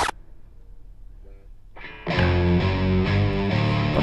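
About two seconds of quiet low hum, then an electric guitar and electric bass start playing together about halfway through, full and loud.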